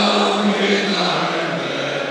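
A man singing the anthem into a microphone, amplified over the stadium's loudspeakers, holding one long note.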